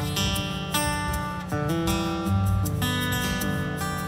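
Live band playing an instrumental song intro without vocals: strummed acoustic guitar over upright bass.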